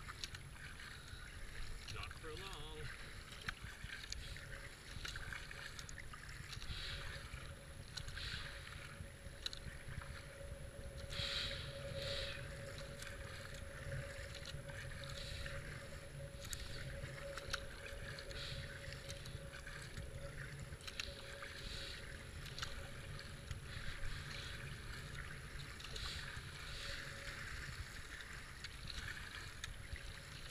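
Kayak paddle strokes splashing about once a second, left and right, over the rush of fast floodwater and a low rumble of wind.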